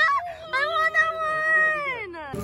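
A high-pitched, drawn-out vocal exclamation from a person's voice, held for about a second and a half, rising at the start and sliding down at the end.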